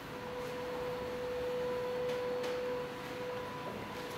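A steady electronic pure tone, held for about three and a half seconds and then cut off, with a fainter tone an octave above it, over the hall's sound system as a video starts to play.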